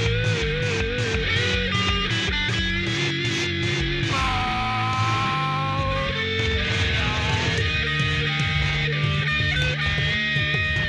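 Rock song from a studio recording: electric guitar over a steady beat, with sustained, wavering lead notes.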